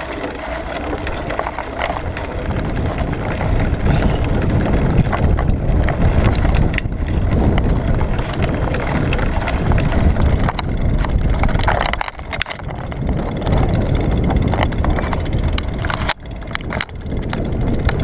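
Wind buffeting the microphone of a bicycle-mounted action camera while riding, over a heavy low rumble from the tyres and road, with scattered clicks and rattles from bumps. The rumble swells about two seconds in and drops out briefly twice in the second half.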